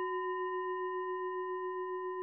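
A singing bowl ringing on after a strike, its tone steady with a slow, regular wavering in loudness.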